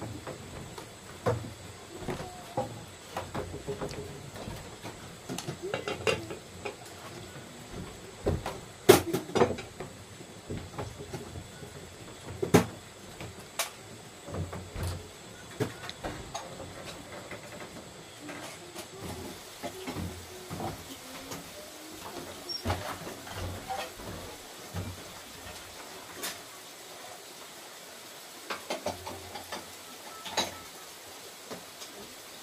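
Scattered knocks and clatter of pots, bowls and dishes being moved and set down, with bare footsteps on a wooden plank floor; the sharpest knocks come about 9 and 12 seconds in.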